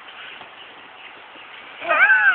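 Low, steady outdoor background noise, then near the end a person's voice breaks into a long, high cry that rises and falls in pitch.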